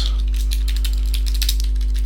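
Computer keyboard keystrokes clicking irregularly over a loud, steady electrical mains hum.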